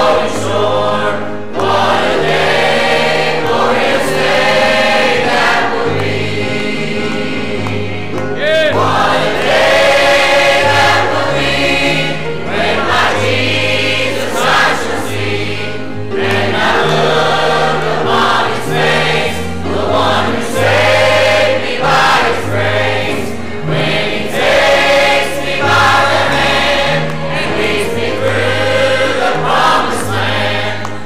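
A church congregation and choir singing a hymn together, with instruments playing along and a bass line moving in steps underneath.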